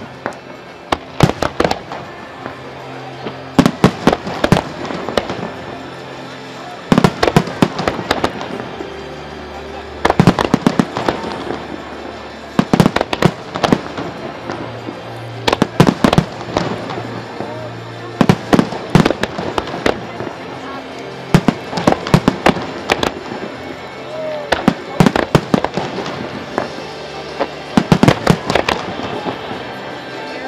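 Aerial firework shells bursting, with sharp bangs coming in quick clusters every second or two throughout.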